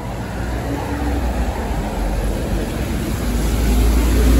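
Rainy city street: a steady hiss of rain and wet-road traffic over a heavy low rumble from vehicles, growing louder.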